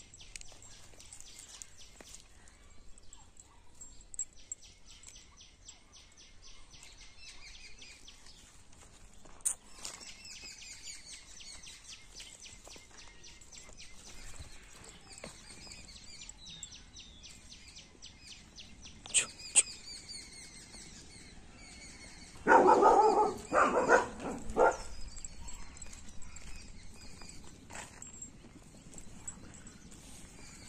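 Birds chirping in quick, evenly repeated trills, with a few sharp clicks. About two-thirds of the way through, a German Shepherd gives three loud calls in quick succession, the loudest sound here.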